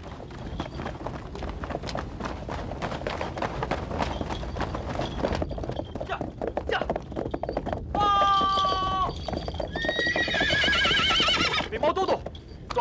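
Horses galloping, a dense rapid clatter of hoofbeats, then a horse whinnying in a long wavering call near the end.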